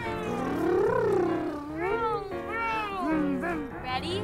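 A voice making drawn-out sliding calls that rise and fall in pitch, one long swoop peaking about a second in and several shorter ones after, over background music with steady held notes.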